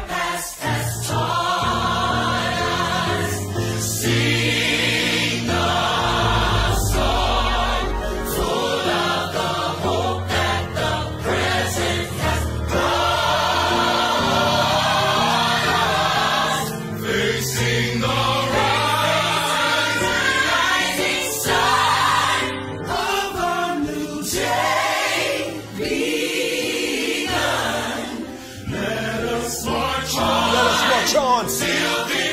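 A gospel song: a choir singing throughout, over a steady low bass accompaniment.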